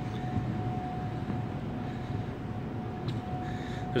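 Steady low hum and hiss of background room noise, with a faint steady high whine running through it.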